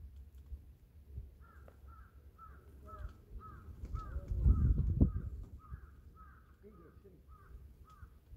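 A bird calling over and over, about two short calls a second, starting about a second and a half in. A gust of wind rumbles on the microphone around the middle and is the loudest sound.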